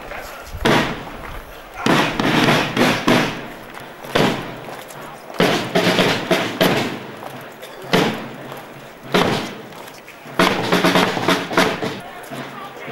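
Marching snare drums of a Schützen drum corps beating a slow march rhythm, a heavy stroke about every second and a quarter, with voices of the crowd underneath.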